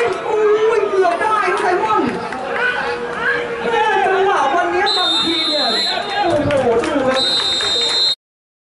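Several people talking over one another, with two whistle blasts from a referee's whistle: the first about five seconds in, lasting about a second, the second near the end.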